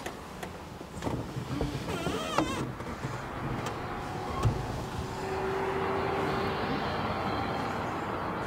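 Sounds of a stopped car: a steady low rumble with several sharp clicks and knocks, and a short wavering squeak about two seconds in.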